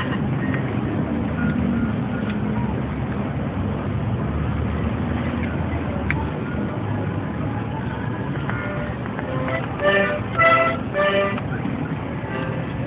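Steady low rumble of street noise, with a few short pitched sounds close together about ten to eleven seconds in.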